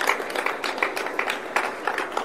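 An audience applauding: many scattered, irregular hand claps that ease off slightly toward the end.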